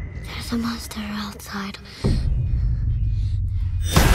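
Film trailer sound: a few short snatches of quiet dialogue, then a deep rumble that starts suddenly about halfway through, ending in a sharp, loud crash as a giant shark strikes a glass underwater tunnel.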